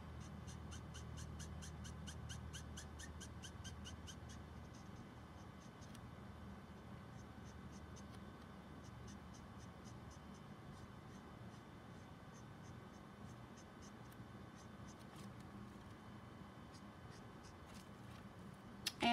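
Copic alcohol marker's nib scratching faintly over smooth card in short, quick colouring strokes, at about five a second for the first few seconds, then in sparser clusters, while shadows are worked into a drawing.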